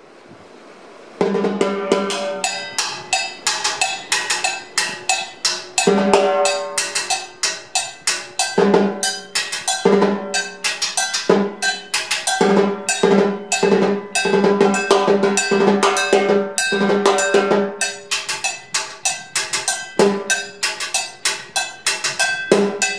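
Timbales played with sticks in a cumbia rhythm: a fast, steady run of sharp stick strokes on the shells, cowbell and plastic block, with ringing hits on the drum heads recurring about once a second. The playing starts about a second in.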